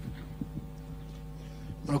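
Steady electrical hum, with a few faint ticks, picked up by the screen-recording microphone; a man starts speaking right at the end.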